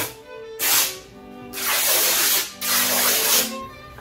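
Background music with three bursts of fabric rustling, each about a second long, as a length of skirt fabric is shaken out and handled.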